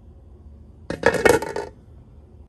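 A glass pot lid with a metal rim clattering as it is set down onto a cooking pot, a rattling clink of several quick strikes lasting under a second, about a second in.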